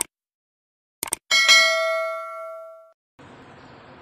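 Subscribe-button sound effect: a click, then a quick double click about a second in, followed by a single notification bell ding that rings out and fades over about a second and a half. A faint steady room hiss comes in near the end.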